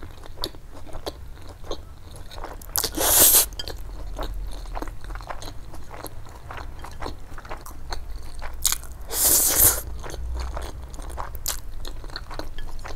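Close-miked chewing of spicy stir-fried instant noodles, a steady run of small wet mouth clicks, broken twice by loud breathy rushes of air at the mouth, about three seconds in and again about nine seconds in.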